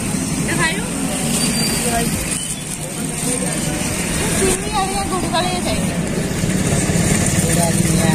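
Street traffic: a motor vehicle engine, such as a passing or idling motorcycle, runs steadily under scattered voices of people talking nearby.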